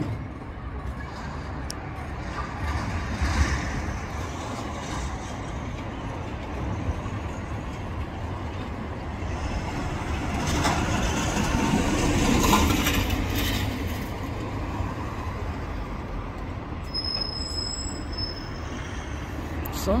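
Steady outdoor traffic noise with a low rumble; a vehicle passes, growing louder to a peak about halfway through and then fading back.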